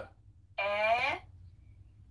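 A voice saying one drawn-out vowel, about half a second long, from a German pronunciation guide being played back.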